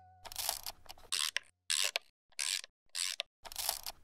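Sound effect on an outro logo card: a string of about six short, hissy scraping or rasping noises, each a fraction of a second long, broken by brief silences.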